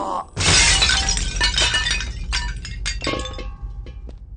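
A loud crash of breaking glass about half a second in, as a man falls backwards into it, followed by shards clinking and tinkling down for about three seconds.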